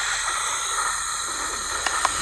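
Steady white noise hiss from a robot cat's open mouth, played as a sleep sound. It starts abruptly and holds at an even level.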